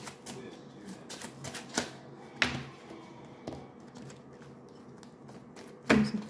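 Tarot deck being shuffled by hand, overhand style: a run of light card taps and slaps over the first couple of seconds, then softer card rustling, and one sharp tap near the end.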